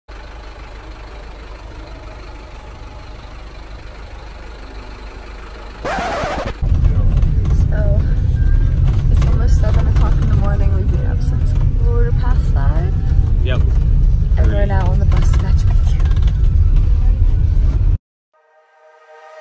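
Bus cabin rumble: a steady low engine and road drone, quieter at first, then a brief rushing noise about six seconds in, after which the drone gets much louder and a woman talks over it.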